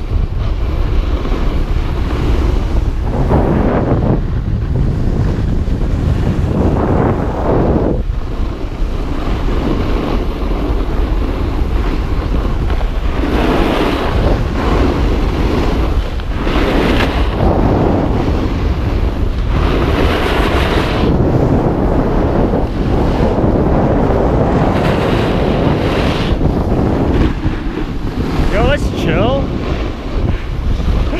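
Strong wind buffeting the microphone of a camera carried down a snowboard run, with surges of a snowboard's base and edges scraping over packed snow.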